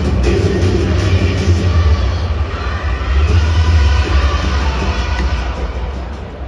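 A relief pitcher's entrance song playing over a domed ballpark's PA system, fading down near the end.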